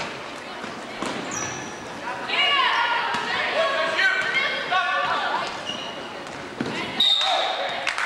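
Basketball bouncing on a hardwood gym floor, with sneaker squeaks and players' voices echoing in a large gym.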